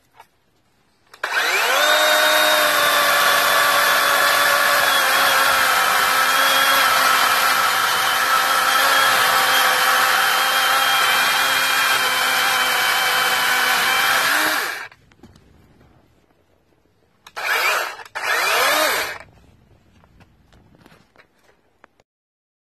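DeWalt 20V XR cordless electric chainsaw spinning up about a second in and running steadily for about 13 seconds as it cuts through a fresh Christmas-tree trunk, its pitch sinking slightly under the load, then stopping. A few seconds later it gives two short blips of the trigger.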